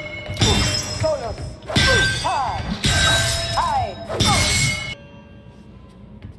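Darksaber sound effect: four crackling clashes against a metal hammer, about a second and a quarter apart, with the blade's hum sweeping up and down in pitch on each swing. It goes quieter after about five seconds.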